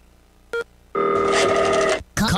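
Telephone ring sound effect: a short beep about half a second in, then a steady ringing tone for the last second.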